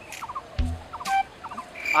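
A few short bird calls. Just before the end, a steady high insect trill begins.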